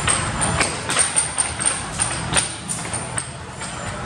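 Arcade din: music playing from the game cabinets, with scattered sharp clacks and knocks throughout.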